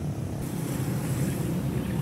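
Outdoor location ambience: a steady low rumble with a hiss that brightens about half a second in.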